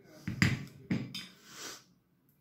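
Two sharp knocks about half a second apart, then a soft rustle: a ceramic plate being set down on a cutting mat and a paintbrush laid on the plate.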